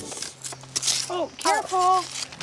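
A young child's high-pitched voice making a few short wordless vocal sounds from about a second in, the last one held briefly, just after a short scratchy sound.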